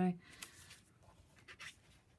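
Two short rustling scrapes of cardstock being slid and handled by hand on a paper-scoring board, just after the last word of a spoken phrase.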